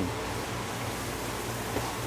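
Steady background hiss with a faint low hum and no distinct sounds in it.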